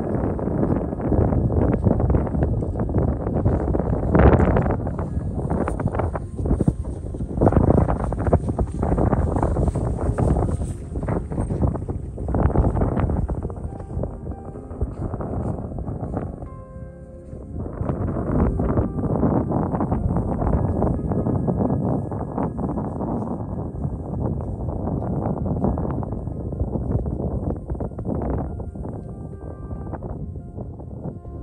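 Gusty wind buffeting the microphone, with soft ambient background music underneath. The wind dips briefly about halfway through, where the music comes through more clearly.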